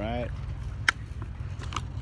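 Plastic blister pack of a Hot Wheels car being handled as it is opened: one sharp click a little under a second in, then a couple of fainter clicks and crackles, over a steady low rumble.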